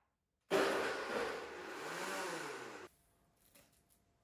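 Countertop blender running as it blends a smoothie, starting about half a second in, its motor pitch wavering up and down with the load, then cut off abruptly after about two and a half seconds.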